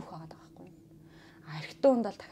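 Soft conversational speech, with a pause of about a second in the middle before the talk resumes near the end.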